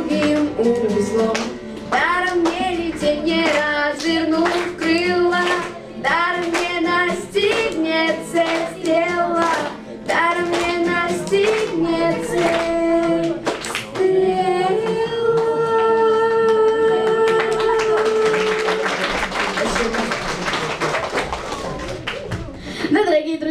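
Two girls singing a song into microphones over acoustic guitar, closing on one long held note. Audience applause follows near the end.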